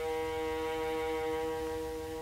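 Early-1930s electrical gramophone recording of a small chamber ensemble of bowed strings and woodwinds holding a long, steady chord, with the disc's hiss and low rumble beneath and little top end.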